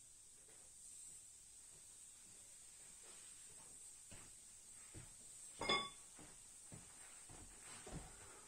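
Quiet workshop with faint handling knocks and one short, ringing metallic clink a little after halfway through, as of a tool or small metal part set down.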